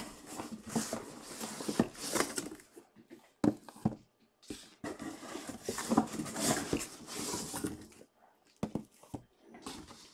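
Cardboard boxes being handled and slid out of a case: irregular rustling and scraping with sharp taps, in two long stretches broken by short pauses.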